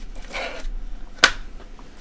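Handling noise at a fly-tying bench: a short soft rustle, then a single sharp click a little over a second in, as materials and a tool are picked up or set down.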